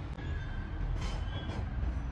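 A few knife chops on a plastic cutting board as carrot is cut, about one second in and again shortly after, over a steady low rumble.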